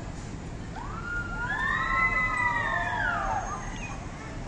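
A siren wailing in the street: one slow rise in pitch, a hold, then a fall, lasting about three seconds, over general street noise.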